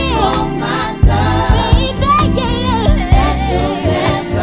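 Neo-soul song: a male singer with layered backing vocals over a bass line and a steady drum beat.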